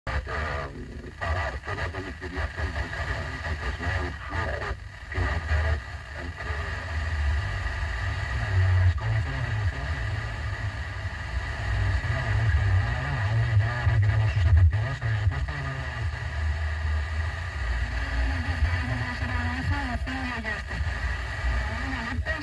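Car FM radio on 100.0 MHz receiving Spanish news station RNE 5 from Zaragoza by sporadic-E skip, over a long-distance path. Faint talk from the station comes and goes through steady static hiss, with a few brief dropouts as the signal fades, over a low rumble.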